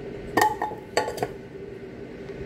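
Potato chunks dropped into an empty stainless steel stockpot: a few knocks with a short metallic ring in the first second and a half.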